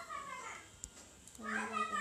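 Two short, high-pitched vocal calls with gliding pitch: one at the start and a longer one about a second and a half in.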